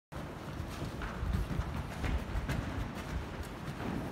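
Hoofbeats of a horse cantering on sand arena footing: repeated dull thuds, roughly two a second.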